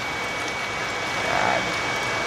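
Water poured from a glass bowl into a stainless steel pot of pork, a steady pouring splash.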